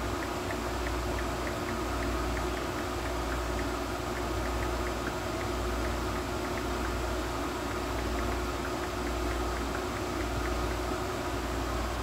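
A steady machine hum with a low rumble that swells and fades about once a second. Over it come faint, quick ticks at typing pace, the taps of a phone's on-screen keyboard.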